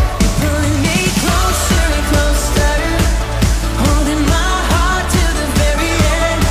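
Upbeat pop worship song: a singer over a full band with a steady drum beat.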